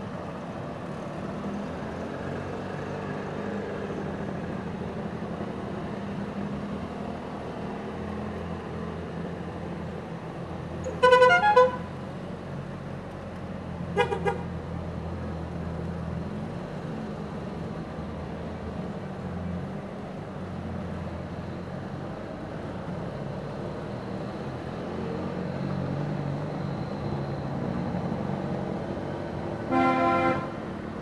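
A slow procession of Trabants with two-stroke engines running steadily as they drive by. A car horn gives two toots about a third of the way in, one short toot a few seconds later, and another toot at the very end.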